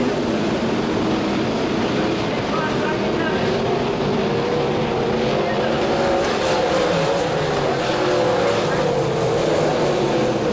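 A pack of winged sprint cars racing on a dirt oval, several methanol-fuelled V8 engines at high revs together. The engine pitch wavers up and down continuously as the cars lift and power through the corners.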